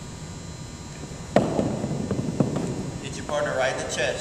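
A softball strikes with a sharp, echoing smack about a second and a half in, followed by a softer knock about a second later, in the ringing acoustics of a gymnasium. Indistinct voices come in near the end.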